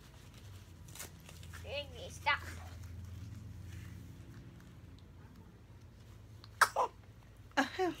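Newborn baby giving two short, high squeaks about two seconds in, rising then falling in pitch, and another brief squeak shortly before the end.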